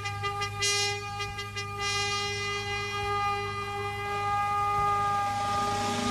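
Military band's wind instruments holding one long sustained chord in a slow introduction, with a rising swell of noise building near the end.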